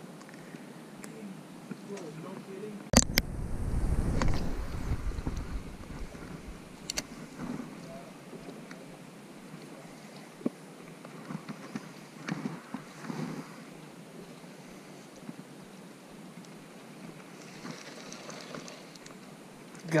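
Wind buffeting the camera microphone for a few seconds, starting just after a sharp click about three seconds in. The rest is quiet open-water background with scattered small clicks and knocks.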